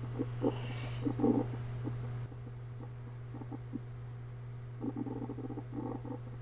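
Steady low hum of background recording noise, stepping down slightly in level about two seconds in, with a few faint, short soft sounds scattered through it.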